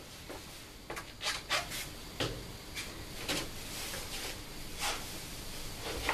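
Someone climbing a wooden door: a run of scrapes, rubs and knocks as shoes, legs and clothes brush and bump against the door panel, about a dozen strokes in all.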